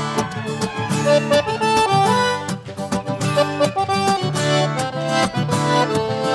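Accordion playing an instrumental solo, a quick melody of held notes, over strummed acoustic guitars in a sertanejo song.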